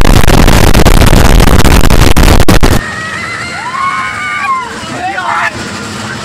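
A very loud, distorted blast of noise, the sound effect edited in with a 'triggered' meme, cuts off suddenly about three seconds in. After it, much quieter, voices call out with rising-and-falling pitch.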